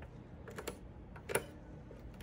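Faint plastic clicks of electrophoresis lead plugs being handled and pushed into the jacks of a Bio-Rad PowerPac power supply: two light clicks about half a second in, then a sharper one about a second and a third in.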